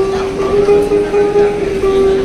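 Guitar played flat across the lap, sustaining one long steady note for about two seconds, with fainter notes beneath it.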